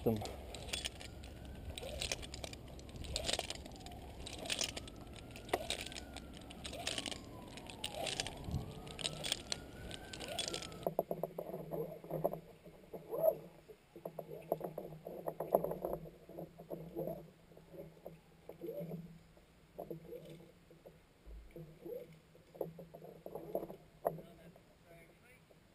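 Mechanical rope ascenders and climbing rope in a frog walker ascent: a run of sharp clicks for the first ten seconds or so, then softer irregular knocks and creaks as the climber moves up the rope.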